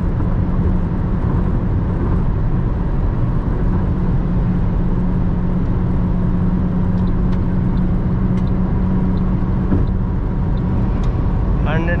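Inside the cabin of a 2018 Toyota Corolla 1.6-litre with CVT at about 160 km/h: a steady engine drone at one unchanging pitch, the CVT holding the revs while it is pushed for more speed, over loud tyre and road noise.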